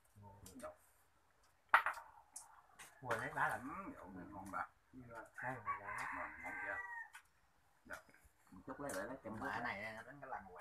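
A rooster crowing once, a call of about a second and a half around the middle, with low voices and a few short clicks around it.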